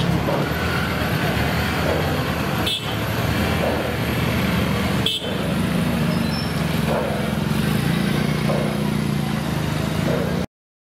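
Auto-rickshaw engine running steadily amid street traffic noise, with two brief breaks in the sound.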